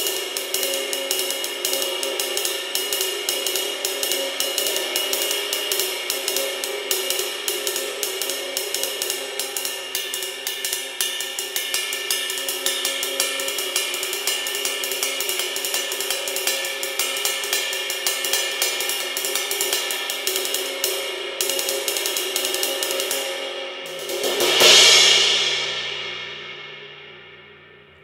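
Meinl Byzance Vintage Pure Ride 20-inch cymbal played with a drumstick in a steady, fast ride pattern, its wash ringing under the strokes. Near the end there is one louder stroke, which rings out and fades away.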